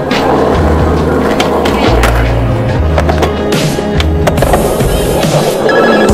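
Skateboard wheels rolling on concrete, with sharp clacks of the board hitting and leaving ledges, under music with a deep bass line that steps between held notes.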